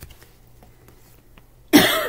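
A woman clears her throat with a short, harsh cough near the end.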